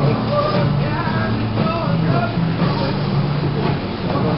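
Background music playing steadily, with voices faintly underneath.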